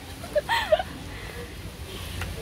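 A young woman's brief laugh about half a second in, over low steady background noise.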